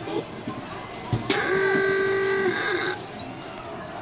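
A sharp knock about a second in, then an arcade ball-toss game's electronic buzzer sounds one steady tone for about a second and a half and cuts off suddenly.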